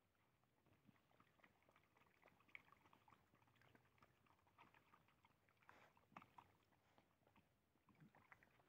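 Very faint, irregular small clicks and ticks of several dogs chewing and eating tortillas from a tray on the ground, a little louder about six seconds in.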